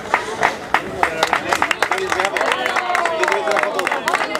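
Crowd applauding, with irregular hand claps and voices over the clapping.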